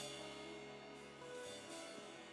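Faint, sustained background music: soft held chords from the worship band, with a few quiet notes in the middle.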